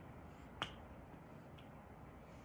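Quiet room tone broken by one sharp click a little after half a second in, then a much fainter click about a second later.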